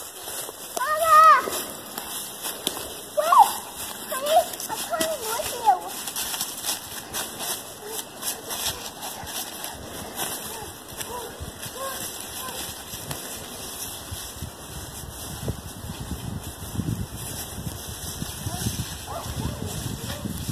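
Footsteps crunching through dry fallen leaves, with a few short voice calls in the first six seconds.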